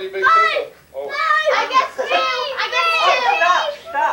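Several children's voices calling out excitedly at once, with no clear words and a short break about a second in.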